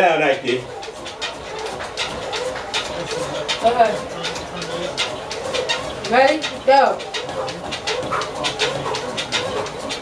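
A person exercising on a treadmill: rapid footfalls and clatter on the belt, with several short voiced breaths that rise and fall in pitch, the strongest about four and six seconds in.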